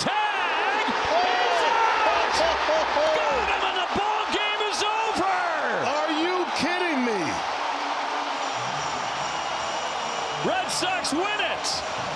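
Ballpark crowd cheering and shouting at the game-ending tag out at third base, with whoops over the roar. Loudest in the first few seconds, then easing off in the second half.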